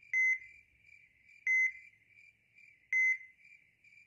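Three short electronic beeps, evenly spaced about a second and a half apart, each a single high tone, over a faint steady high tone.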